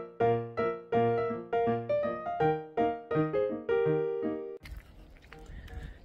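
Background music on a piano-like keyboard: a melody of struck notes, about three a second. It cuts off suddenly near the end, leaving a low outdoor background rumble.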